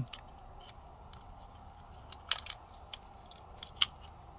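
A few small clicks of a hex wrench and steel pin in a Ruger MK IV pistol's grip frame as the sear pin is pushed through, two of them louder, about two seconds in and near the end.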